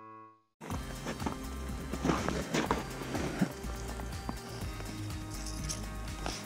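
Background music ends, a short gap follows, and then close-up handling noise begins about half a second in: a steady low rumble with irregular knocks and clothing rustles against the camera.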